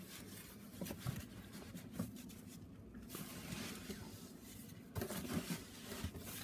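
Faint scraping and crunching of dry curing salt as a gloved hand scoops it and packs it into the hock of a ham in a plastic bin, with scattered soft taps; the handling gets busier near the end.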